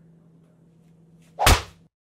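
A single loud, sharp smack of a blow striking a person, about one and a half seconds in, cut off suddenly.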